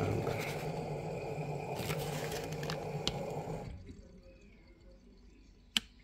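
LG washer-dryer running normally with its new door lock switch: a steady low hum and rumble that cuts off suddenly about two-thirds of the way through. A single sharp click near the end.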